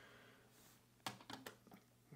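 Faint light clicks of a hard plastic graded-card slab being handled and set down on a stack of other slabs, a few quick clicks in the second half.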